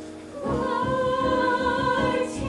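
Musical-theatre ensemble singing held notes with accompaniment, growing louder about half a second in.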